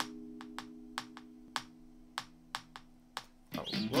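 Electric guitar (Fender Stratocaster through a small Blackstar amp) letting a chord ring out and slowly fade, with faint sharp clicks every half second or so. Loud strumming comes back in near the end.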